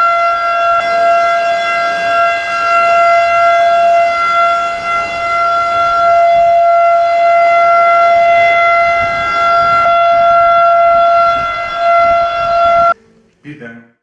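Civil defence siren sounding one steady, unwavering tone for the nationwide moment of silence marking the anniversary of Atatürk's death. It cuts off suddenly near the end.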